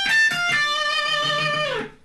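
Electric guitar playing a short bluesy phrase high on the B string: a few quick notes, then a held note with vibrato that slides down in pitch and cuts off just before the end.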